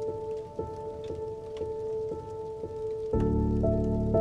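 Slow, melancholic solo piano repeating one note about twice a second, joined about three seconds in by a fuller, louder chord with bass notes. A steady patter of rain runs underneath.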